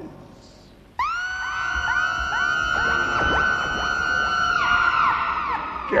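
Electronic sci-fi sound effect with a sudden start about a second in. A shimmering mass of many tones follows, their pitches sweeping up at the onset and falling away near the end, marking the non-human judge's departure.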